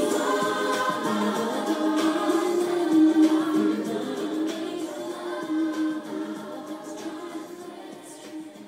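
Several voices singing a slow song together, holding long notes, fading out over the second half.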